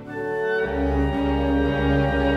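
Classical music on bowed strings, cello and violin, playing sustained notes. A little over half a second in, a deep bass note comes in under a fuller held chord and the music grows louder.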